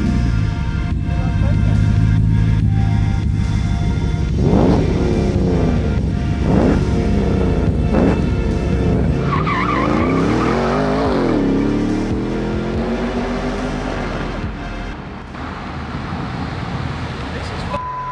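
A V8 engine running deep and steady, then accelerating hard, its revs climbing and dropping through several gear changes, then winding down as the vehicle slows.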